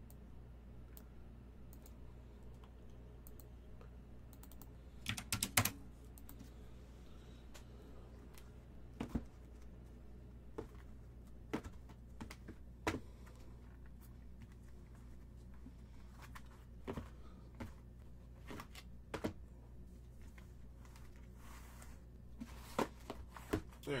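Shrink-wrapped cardboard hobby boxes being handled, shifted and set down on a table: scattered light taps and knocks, with a quick cluster about five seconds in, over a low steady hum.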